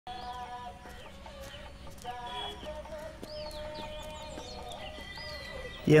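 Village outdoor ambience of hens clucking and small birds chirping, over soft background music.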